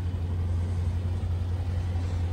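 Steady low rumble of a 2018 Dodge Challenger T/A 392's 6.4-litre HEMI V8 idling.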